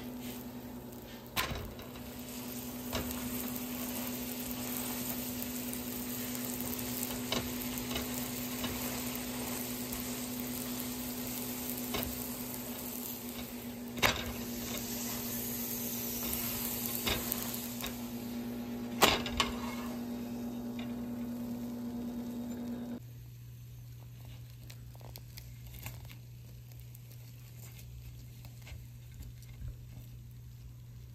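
Lachha paratha frying in oil on a flat griddle (tawa): a steady sizzle with a low hum underneath and a few sharp clicks. About 23 seconds in the sizzle cuts off, leaving a quieter hum and faint soft rustles.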